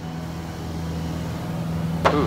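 Light aircraft's piston engine droning steadily in flight, heard from inside the cockpit.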